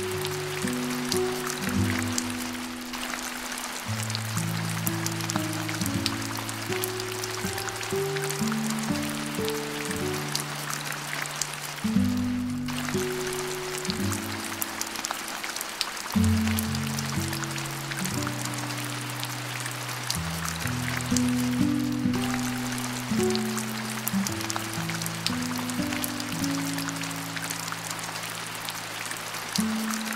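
Background music of slow, held low notes over a steady hiss and patter of rain.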